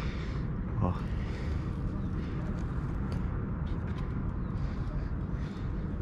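Steady wind noise rumbling on the microphone, with a few faint ticks.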